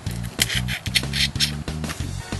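Background guitar music, over which come several short slurping noises from about half a second to a second and a half in: a man sucking the juice out of a boiled crawfish head.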